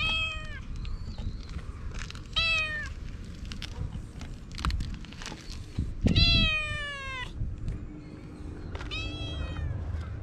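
A calico cat meowing four times, each meow sliding down in pitch; the third, about six seconds in, is the longest and loudest.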